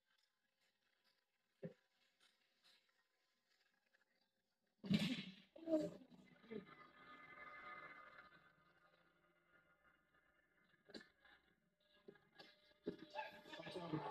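An open-hand slap to the face in a slap-fighting match lands hard about five seconds in, followed by shouts and a spell of crowd noise. It sounds faint and thin, played through a TV and picked up by a phone.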